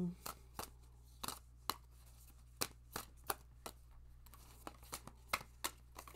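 A deck of tarot cards being shuffled and handled by hand, giving a run of short, sharp, irregular snaps and taps.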